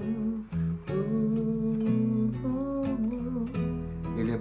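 A man humming a slow melody in long held notes over an acoustic guitar, with a brief break in the voice about half a second in.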